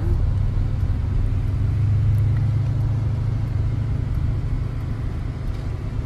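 Steady low rumble of a moving car, heard from inside the cabin: engine and road noise while driving.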